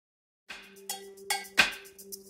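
Short percussive logo sting: a run of sharp, bright strikes, about three a second, over a steady held low tone, starting about half a second in.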